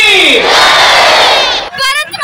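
A large crowd of students' voices together: a long held note slides down at the start, then turns into a loud mass shout lasting about a second and a half. Near the end it cuts to a few separate voices.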